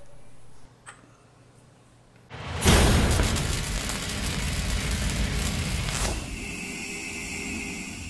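Logo-animation sound effect: after a couple of seconds of near quiet, a sudden loud whooshing boom about two and a half seconds in, which gives way to a steady high ringing tone that fades away.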